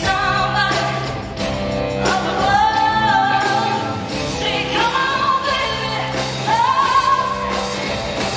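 A female pop singer singing live into a microphone with band accompaniment, holding long notes that swell upward in three phrases.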